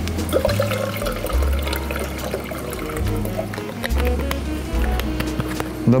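Background music with a bass line stepping from note to note, over cranberry juice being poured from a carton into a steel pitcher.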